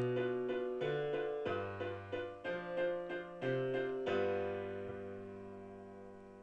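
Sampled acoustic piano (HALion One's Rock Piano preset) playing a blues-rock MIDI piece in chords, a new chord about every second. The last chord, struck about four seconds in, rings on and fades away.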